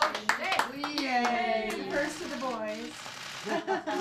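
A few people clapping in the first second, then several voices talking and exclaiming over one another, including a child's.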